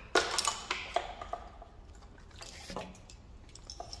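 A wiring harness being handled: a few sharp clicks and rustles of plastic connectors and braided loom in the first second and a half, then quieter handling.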